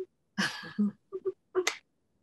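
Short, choppy bursts of a woman's laughter over a video call, cut in and out by the call's noise suppression.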